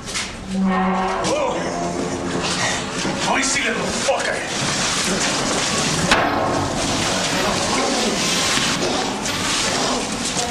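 A drawn-out, wavering human cry or moan in the first few seconds, followed by a dense, steady noise with voices in it.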